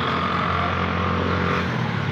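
A motor engine running steadily nearby with a low hum and a high whine. The whine stops about one and a half seconds in, and the hum drops in pitch just after.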